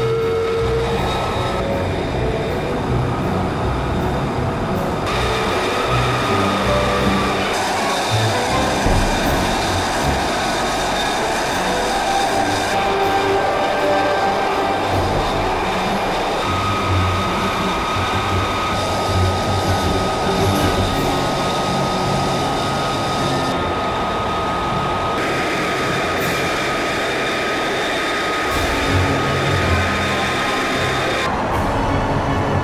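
A jet aircraft engine running at idle: a steady, loud roar with a high, even whine over it. Its character changes abruptly a few times.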